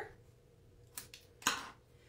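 Small craft scissors snipping the end off a narrow cardstock strip: two short sharp snips about half a second apart, the second louder.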